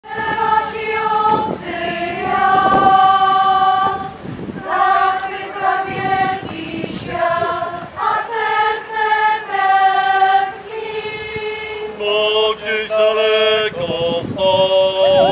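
Amateur mixed choir of women's and men's voices singing unaccompanied, in long held notes that change from phrase to phrase.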